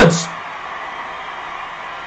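A man's shouted word cut off in the first moment, then a steady background hiss with no further voice.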